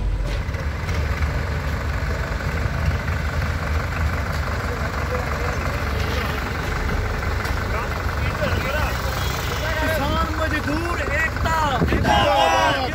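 Diesel tractor engines running steadily as a convoy drives past, a continuous low rumble. Voices rise over it in the last two seconds.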